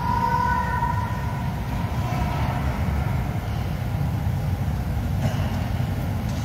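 Steady low rumbling background noise, with faint held tones over it during the first two seconds.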